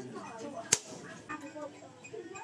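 A single sharp hammer strike on steel about three quarters of a second in, a blow on the tong-held steel block set against a motorcycle brake disc rotor, with faint voices in the background.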